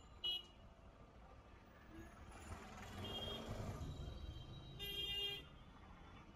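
Street traffic with short, high-pitched vehicle horn beeps: a brief toot just after the start, another about three seconds in and a longer one around five seconds. A passing vehicle's rush swells in the middle over a low traffic rumble.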